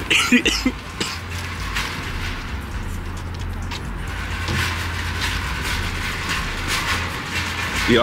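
A man laughs briefly, then a steady low rumble and hiss of outdoor background noise with no clear single source.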